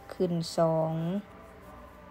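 A woman's voice says a short knitting instruction in Lao-accented Thai, "khuen song" ("up two"), ending on a drawn-out vowel. Faint soft background music follows.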